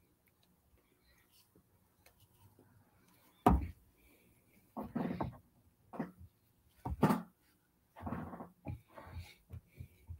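Spatula scraping and knocking against a glass measuring cup and jar while the last of a cream is scraped out. Two sharp knocks, about three and a half and seven seconds in, stand among several short scraping sounds.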